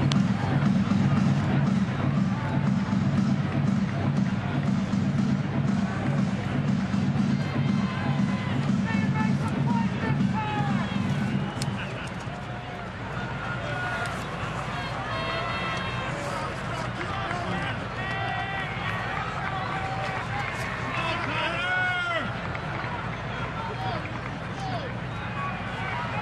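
Ballpark ambience between pitches. Stadium PA music with a strong, pulsing bass plays for roughly the first twelve seconds and then fades down. After that comes the general chatter of the crowd, with scattered individual shouts and calls.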